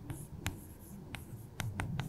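Chalk writing on a chalkboard: about five sharp taps of the chalk against the board, with faint high scratching between them.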